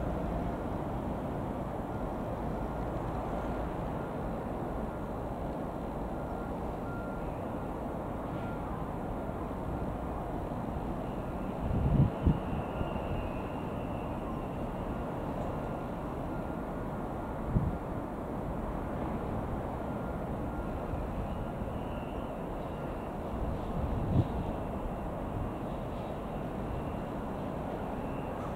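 Steady low rumble of trains approaching along the line, with an EF65 electric locomotive hauling a freight train coming in. Three brief low thumps come about twelve, seventeen and twenty-four seconds in.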